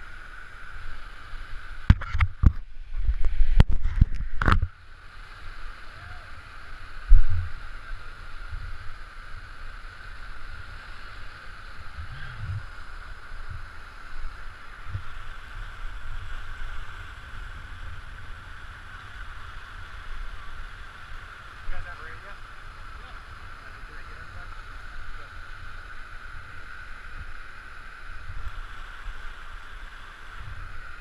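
Steady rushing of a whitewater creek's rapids, running fast at flood-high water. About two to five seconds in there is a burst of loud bumps and rumble on the microphone, and another single bump a couple of seconds later.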